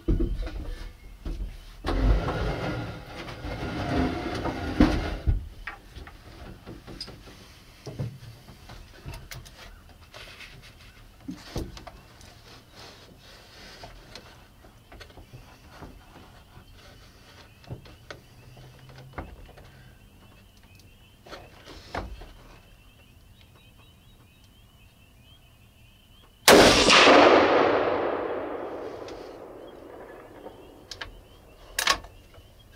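A single .300 Winchester Magnum rifle shot, very loud, followed by a long echo that dies away over about three seconds. In the first five seconds there are rustling and knocking sounds.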